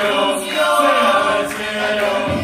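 Murga chorus singing together in sustained, layered notes.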